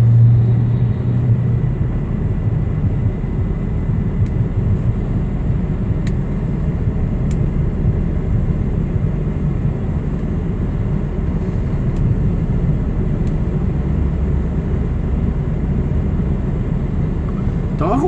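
Truck engine and road noise heard from inside the cab while driving slowly: a steady low rumble, with a stronger low hum in the first second or so.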